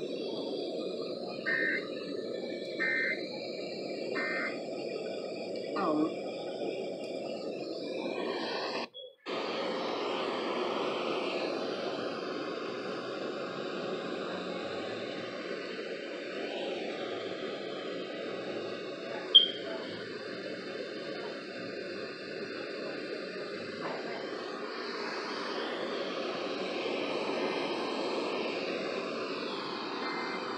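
Steady hiss of radio static from a receiver, with three short high beeps about a second and a half apart near the start, a brief cutout about nine seconds in and one short sharp blip in the middle.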